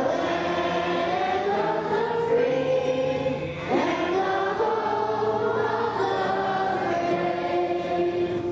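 A group of voices singing a song together, holding long notes and moving between them.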